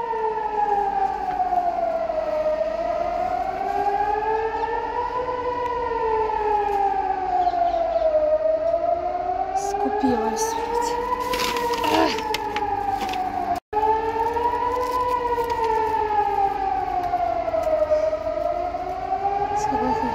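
Civil-defence air-raid siren wailing in a slow rise and fall, one cycle about every six seconds: the rocket-attack warning. It cuts out for a moment about two-thirds of the way through.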